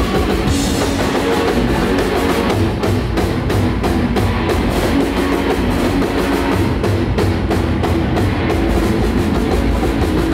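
Heavy metal band playing live: electric guitars over a drum kit, with steady regular drum hits.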